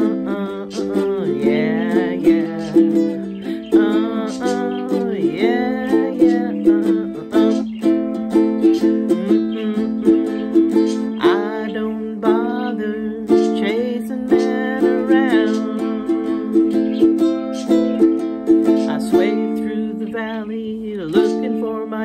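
Ukulele strummed in a steady accompaniment, with a woman humming wordlessly over it in sliding, bending phrases.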